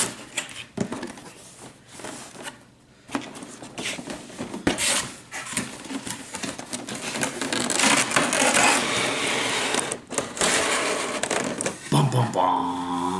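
Cardboard box and clear plastic clamshell packaging being handled: scattered knocks and scrapes as the box is opened, then a longer stretch of crinkling and scraping in the second half as the plastic tray slides out of the box.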